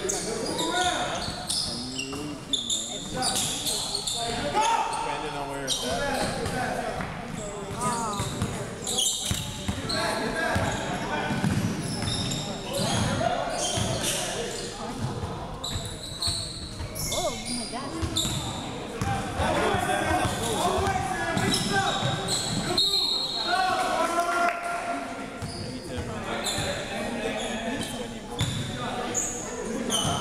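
Basketball bouncing on a hardwood gym floor, with players' voices calling out, echoing around a large hall.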